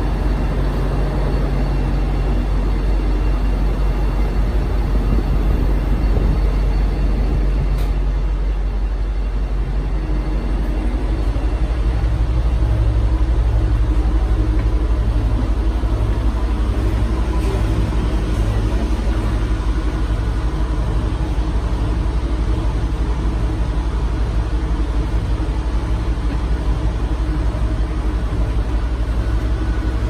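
Low, steady rumble of a stopped Tri-Rail diesel commuter train idling at the platform. It is heard first from the platform and then, after about ten seconds, from inside the coach, where a low hum pulses evenly.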